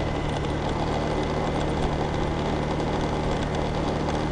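Motorbike engine running at a steady cruising pace while riding, a constant low hum that keeps one pitch throughout.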